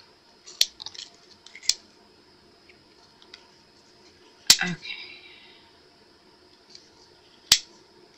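Wooden stir stick scraping and clicking against a small jar while stirring thick pigment paste: faint scraping with a few sharp taps, the loudest a little past halfway and another near the end.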